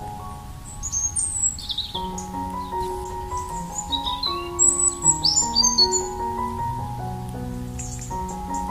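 Soft, slow piano music with birds chirping and whistling over it. The bird calls come in about a second in and again in a cluster near the middle.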